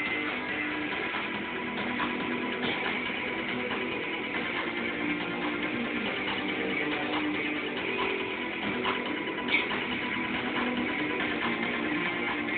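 Live band playing an instrumental passage led by electric guitars, with no singing yet. The recording is dull, with the highs cut off, and there is one sharp accent near the end.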